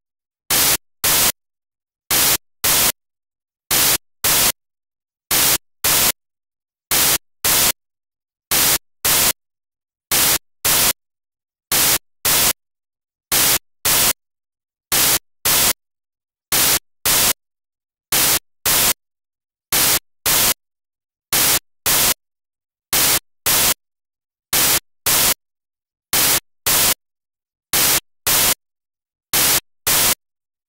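Loud bursts of digital static from a lost or corrupted video feed. The bursts are short and come in pairs about half a second apart, repeating about every second and a half with silence between them.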